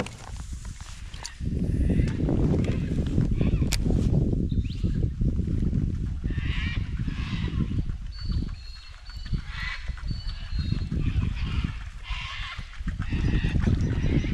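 Wind buffeting the microphone in a steady low rumble, with birds calling in three short bouts, about six, nine and a half, and twelve seconds in.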